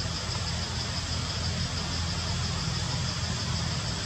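A steady low rumble like an idling motor, with a faint high, rapidly pulsing buzz above it.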